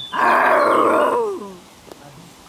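A person's voice imitating a dragon's roar: one harsh, loud growl about a second long that ends in a falling tail.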